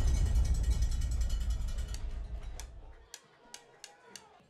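Television sports bumper sting: a deep boom that fades away over about three seconds, with rapid, even ticking over it, then a few separate clicks near the end.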